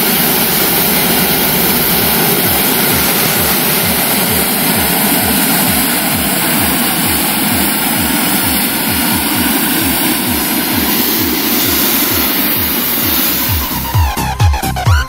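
Hot-air balloon propane burner firing for lift-off: a loud, steady rush of noise with a regular low pulsing underneath.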